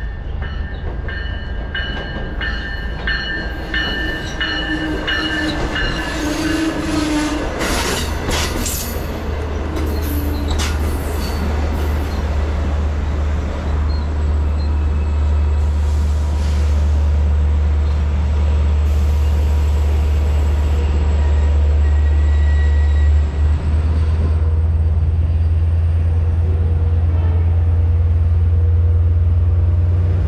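Long Island Rail Road diesel-hauled train of bilevel coaches sounding its horn on the approach, the chord dropping in pitch as it reaches the platform. It then passes close at speed, wheels knocking over the rail joints, with a deep steady rumble that grows louder toward the end.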